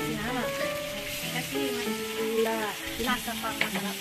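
Chicken feet sizzling in a hot wok as liquid is poured over them from a bottle.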